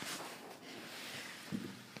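Faint, even rustling noise from a phone being handled and swung about, with a small bump about one and a half seconds in.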